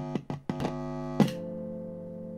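A short musical sting: about half a dozen quick struck notes in the first second or so, the last the loudest, then a held chord that rings on and slowly fades.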